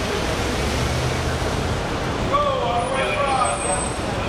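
Steady traffic noise from cars and shuttle buses with a low engine rumble. A short voice-like sound, rising and falling in pitch, comes about two and a half seconds in.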